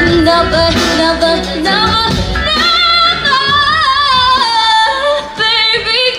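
A young female singer sings live into a microphone without words: quick vocal runs, then a long held note with vibrato that ends shortly before the song finishes. Low accompaniment underneath thins out about halfway through.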